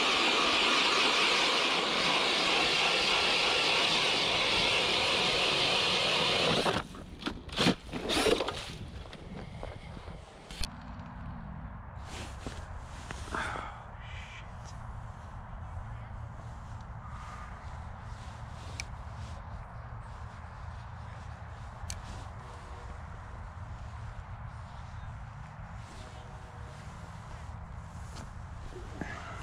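Cordless drill driving an ice auger through the ice: a loud, steady grinding for about seven seconds that stops suddenly. A few knocks follow, then quieter small clicks and handling.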